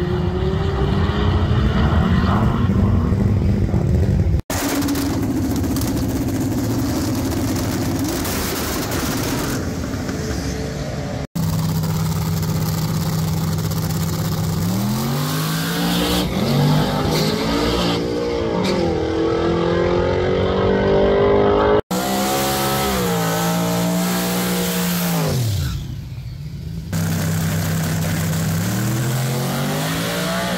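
Drag cars running down the strip, engines pulling hard with their pitch climbing and shifting through the gears, in several short clips joined by abrupt cuts about 4, 11 and 22 seconds in.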